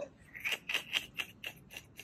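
A quick run of short, sharp breaths and mouth noises, about five a second and fairly quiet, from a man whose mouth is burning from Da Bomb hot sauce.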